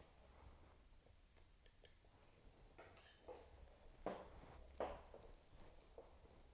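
Near silence with faint, soft rustling as latex-gloved fingers peel skin off a pheasant's wing bone, with two short, slightly louder rustles in the second half.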